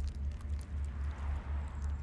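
Low rumble of a car's interior on the move, with a faint breathy mouth sound around the middle as fingers probe a mouth.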